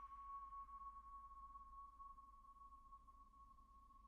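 A single struck chime note ringing on at one steady pitch and slowly fading away, the opening note of quiet music.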